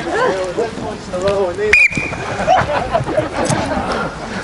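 A coach's whistle gives one short, steady blast a little before halfway through, the signal for the players to find a hoop. Voices of the group chattering and calling run throughout.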